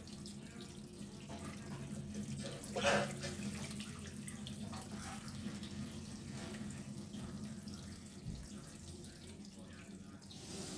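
Cooking water from boiled greens pouring out of a tilted stainless steel pot and splashing into a kitchen sink, a steady hiss with one brief louder splash about three seconds in.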